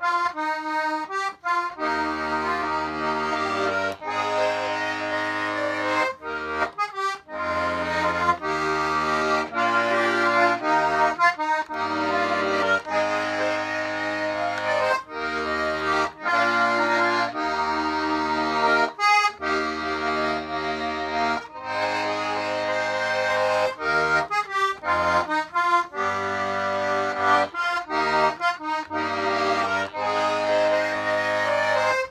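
Circa-1925 M. Hohner B♭/E♭ 12-bass, two-voice button accordion playing a tune: a melody on the treble buttons over bass notes and chords that change about every second, with brief gaps between notes. Its reeds are freshly tuned a little wet, and its chords have flattened thirds for a sweeter sound.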